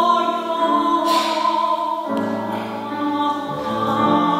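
A female opera singer sings in full classical voice with grand piano accompaniment, holding long notes. The notes change about halfway.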